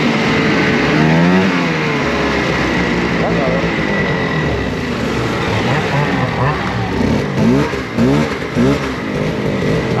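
Two-stroke snowmobile engines running, with one rev about a second in, then a string of quick throttle blips in the last few seconds. The blipped sled is one that turns out to be running on only one cylinder.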